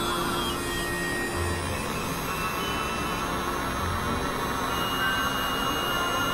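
Experimental electronic drone music: a dense, noisy synthesizer texture with scattered held tones. A high falling glide ends about half a second in, and two short low notes sound about a second and a half and four seconds in.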